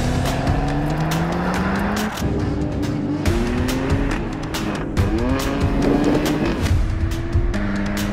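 A car engine accelerating hard through the gears: the pitch climbs in each gear and drops back at each shift, several times over, with background music and a steady beat.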